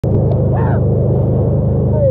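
Steady low drone of the towing wakesurf boat's engine mixed with rushing water, with a short rising-and-falling shout about half a second in and another near the end.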